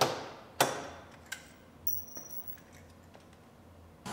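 Hand pop-rivet tool setting rivets through the headlight mounting panel and bumper cover: two sharp snaps about half a second apart, each ringing briefly, then a smaller click and a few faint ticks.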